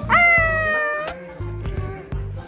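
An infant's single high squeal lasting about a second, jumping up in pitch and then sliding slowly down, over background music.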